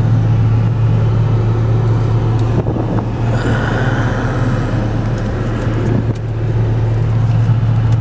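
1995 Volvo 850's inline five-cylinder engine idling steadily, heard from inside the cabin as a low, even hum. A brief hiss rises over it near the middle.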